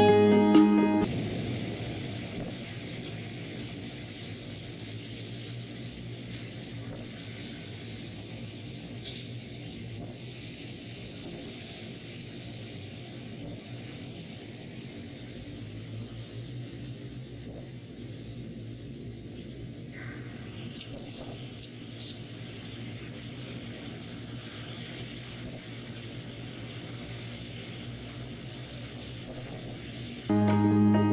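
Music that stops about a second in, then a phone recording of a city at night: a steady low rumble with a faint hiss and no distinct separate booms. This rumble is the noise reported as a mysterious booming.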